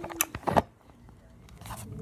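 Handling noise from a phone being moved down and set on a floor: a sharp click and a short scrape in the first half second, then near quiet.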